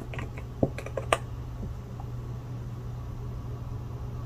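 A few small, sharp plastic clicks and taps in the first second or so as a gel polish bottle and its cap are handled, then only a steady low hum.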